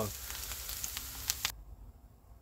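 Sauerkraut sizzling in a hot iron pan, its liquid cooked off, with a couple of light clicks. The sizzle cuts off suddenly about one and a half seconds in.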